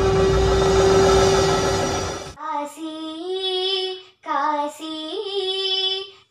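Intro music with a long held note cuts off abruptly about two seconds in. A young girl then sings a Shiva devotional song unaccompanied, her phrases broken by short pauses.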